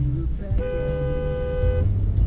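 Car horn sounding one steady blast of just over a second, over background music.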